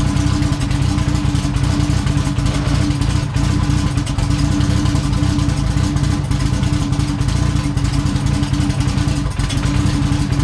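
Turbocharged Mitsubishi 4G63 four-cylinder engine of a drag car running steadily at idle, with no revving, loud and even throughout.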